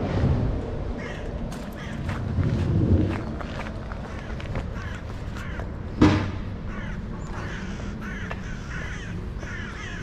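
Crows cawing again and again in short calls over a low outdoor rumble. A single sharp thump about six seconds in is the loudest sound.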